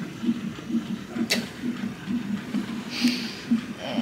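Fetal heart monitor's Doppler speaker playing the baby's heartbeat as a rapid, even pulsing of about four pulses a second. There is one sharp click about a second in and a short hiss near three seconds.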